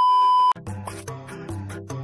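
A loud, steady, high test-tone beep of the kind played over TV colour bars, cutting off suddenly about half a second in. Background music with a steady beat then picks up.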